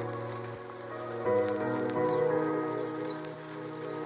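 Calm instrumental chill music: held chords over a slowly changing bass line, swelling a little over a second in. Behind it sits a faint hiss with a few scattered soft ticks.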